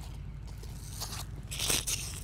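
Hook-and-loop straps on a neoprene horse leg support boot being pulled and pressed shut: soft scratchy rustling, loudest in a brief burst a little before the end.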